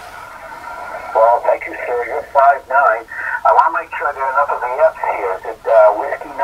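A distant amateur radio station's voice received on 20-metre single-sideband and heard from the transceiver's speaker: thin, narrow-band speech over a faint hiss of band noise, starting about a second in.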